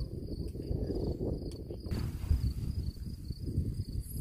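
Crickets chirring steadily at a single high pitch in the grass, over a low, uneven rumble of wind on the microphone.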